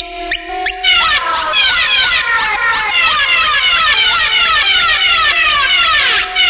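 A 174 BPM hardtekk track in a breakdown with the kick drum out. It opens with hi-hat ticks over a stepping synth melody. From about a second in, a synth repeats fast falling sweeps, about six a second, over a held note.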